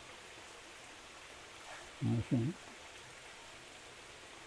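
Mostly a faint, steady background hiss, with one brief two-syllable spoken utterance about two seconds in.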